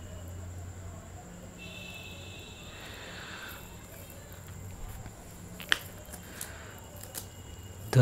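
Quiet room tone with a steady low hum and a faint high whine, under faint rustling of a leather motorcycle glove being handled. A single sharp click comes a little before six seconds in.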